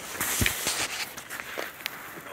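Rustling and scuffing of movement in snow and straw, with a dull thump about half a second in.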